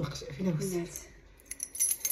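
A bunch of metal keys on a key ring jangling, a quick run of bright clinks in the second half, after a short spoken word.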